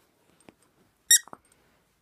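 A plush dog toy squeaks once, short and high-pitched, as a cocker spaniel bites down on it, with a brief falling tail. A faint tick comes just before.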